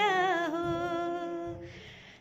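A woman singing unaccompanied. She holds one long wavering note that slides down in pitch and fades out about one and a half seconds in, followed by a faint breathy hiss.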